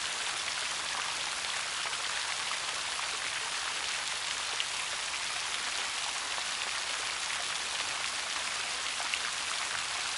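Steady rain falling, a continuous even hiss with a couple of louder single drops, about halfway and near the end.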